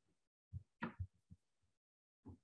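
Mostly near silence, broken by a few faint, short, muffled low thumps, the largest about a second in, cut off abruptly in between as if by a noise gate.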